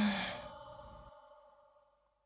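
The last held note of a man's sung call to prayer (adhan), its echo fading to silence within about two seconds, with a short breathy sigh at the start.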